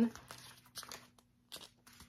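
Paper pages of a small paperback journal being flipped by hand: several soft, brief rustles and clicks, with a short quiet gap before a last few.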